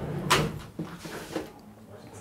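Glass sliding entrance door being slid shut, very quiet: a brief swish about a third of a second in, then a few faint knocks as it settles.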